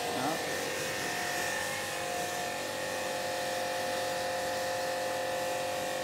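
Electric pressure washer running with a steady motor whine and the hiss of its water spray.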